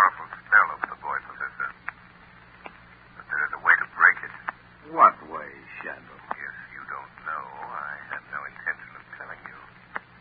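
A man's voice in a 1930s radio drama recording, with a low steady hum underneath. The sound is thin and muffled, as on an old broadcast recording.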